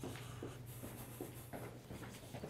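Faint footsteps of a man walking down a stairway, a few soft, irregular steps over a low steady hum.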